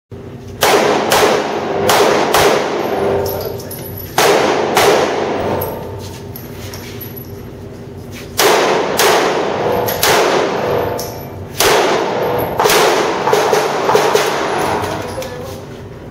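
Handgun shots fired in quick strings, mostly as close pairs, each ringing with heavy echo off the range's hard walls. There is a short lull after the first two strings before the firing picks up again.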